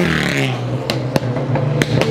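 Car engine coming down off a rev and then holding a steady, fast idle, with a few sharp clicks or cracks over it.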